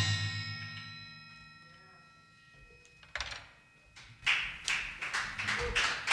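A rock band's last chord, electric guitars, bass and accordion, ringing out and fading away over about two seconds. After a short hush comes one sharp burst, then a few people clapping from about four seconds in.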